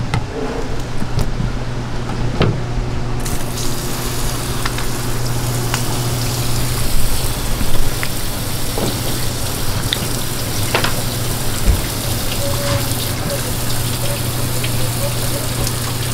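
Tap water running in a steady stream onto a cutting board as a squid is rinsed and rubbed by hand; the water comes on about three seconds in. Scattered clicks and knocks, with a steady low hum underneath.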